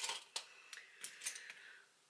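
A few separate light clicks and taps of small makeup items being handled, such as pencils, a palette or brushes.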